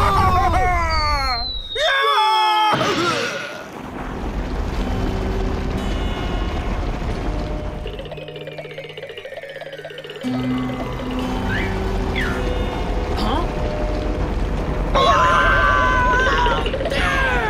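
Cartoon dynamite explosion at the start, with falling whistle-like sound effects over its first few seconds. Background music follows for the rest.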